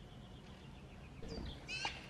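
A Eurasian magpie calling: faint high notes at first, then one short, louder call near the end.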